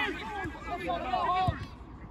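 Voices of players and spectators calling out across an open football pitch, heard from a distance, with one dull thump about one and a half seconds in.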